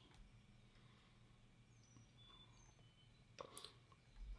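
Near silence: room tone, with a faint brief handling click near the end as fingers take hold of the fly in the vise.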